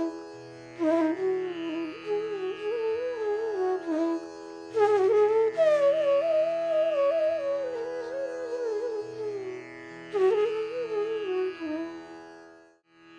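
Bansuri bamboo flute playing phrases of Raga Hameer over a steady drone, in three breaths. The middle phrase climbs higher and then sinks back down.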